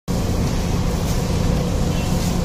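Steady low rumble and hum of street background noise, with no distinct knocks or clatter.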